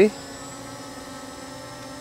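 MJX Bugs MG-1 quadcopter hovering, its brushless motors and propellers giving a steady buzz. A faint high whistle runs through it, which the pilot is unsure is normal.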